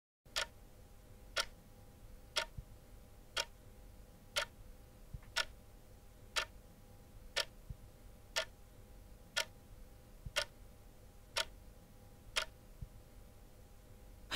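A clock ticking steadily, one tick a second, about a dozen ticks in all, over a faint steady hum.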